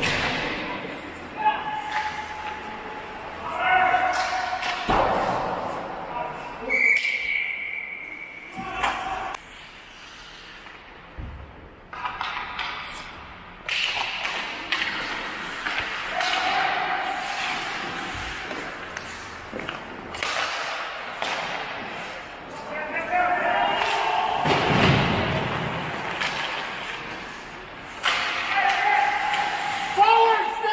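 Ice hockey game sounds in a large rink: sticks and pucks clacking, and thuds against the boards, with players' shouts scattered throughout. A single high whistle blast sounds about seven seconds in, the referee stopping play.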